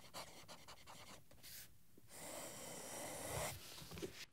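Faint scratching of a steel broad fountain-pen nib on paper, a quick run of small ticks from the strokes in the first second or so. About two seconds in comes a soft breath lasting about a second and a half.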